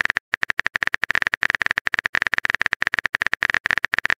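Rapid, evenly spaced typing clicks from a keyboard-typing sound effect, with a short break just after the start.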